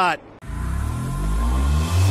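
Channel logo intro sound design starting about half a second in: a deep bass rumble with slowly falling tones under a hiss, growing louder.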